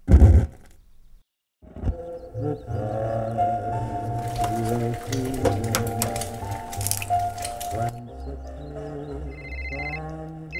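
A record player's stylus drops onto a vinyl record with a short loud thump. After a brief silence, music starts playing from the record about a second and a half in and runs on, changing near the end.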